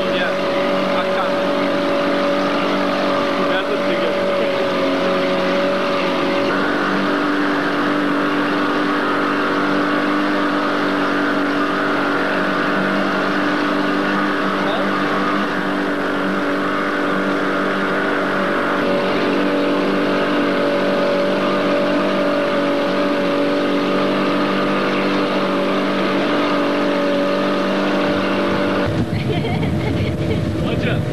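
Motorboat engine running in a steady drone, with a shift in its pitch about six seconds in. Near the end the sound changes abruptly to a lower, rougher rush.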